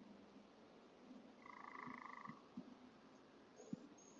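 Near silence: faint outdoor hiss through a security camera's microphone, with a brief faint call holding two steady pitches about a second and a half in, and a few soft clicks.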